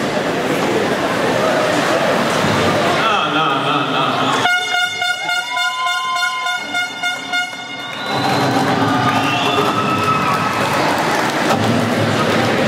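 Performance soundtrack played over the rink's sound system: a noisy stretch with voices, then a horn blast held for about three and a half seconds starting about four and a half seconds in, then noisy sound with voices again.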